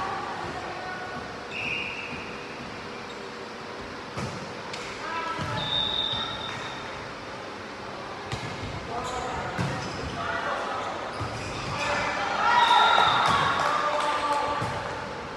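Indoor volleyball play on a hardwood court: scattered sharp ball hits, a few brief high shoe squeaks, and players shouting, loudest about twelve to thirteen seconds in.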